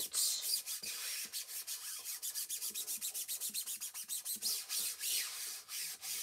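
A hand rubbing an adhesive stencil down onto a painted wooden board in quick, rhythmic back-and-forth strokes, smoothing it flat before stenciling.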